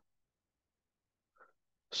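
Near silence between sentences, broken by one short, faint sound about one and a half seconds in, with a spoken word starting at the very end.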